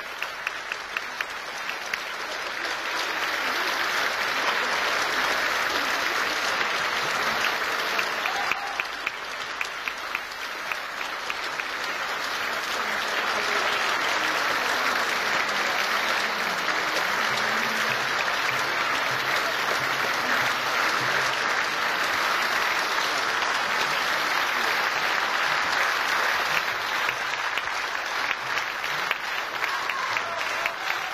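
Concert audience applauding: it starts as distinct claps, swells within a few seconds, eases briefly about ten seconds in, then builds again and holds steady.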